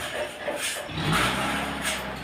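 Sawmill machinery motor running with a low, steady hum that starts about a second in, with short scrapes and knocks over it.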